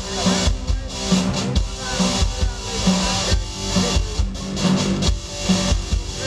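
A live rock band playing instrumental music: electric guitar, bass guitar and drum kit, with a steady, regular kick-drum beat.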